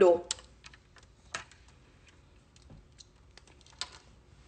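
Scattered light clicks and taps, about a dozen at uneven spacing, from handling the phone that is streaming the live video.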